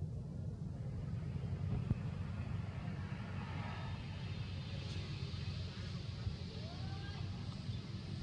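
Steady low outdoor rumble, with a faint short high call that rises and falls about six and a half seconds in.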